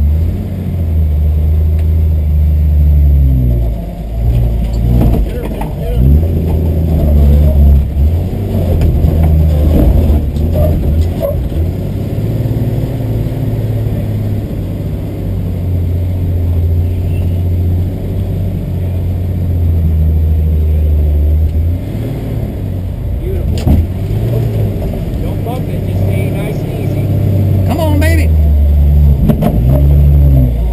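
A 1960 Willys Station Wagon's engine running under load as the wagon climbs a rock ledge, the revs rising and falling several times.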